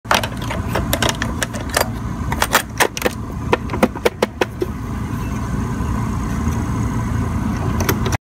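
A cassette clattering and clicking as it is pushed into a Juliette cassette recorder and its door is pressed shut, a quick run of sharp plastic clicks; after about four and a half seconds the clicking stops and a steady low hum remains.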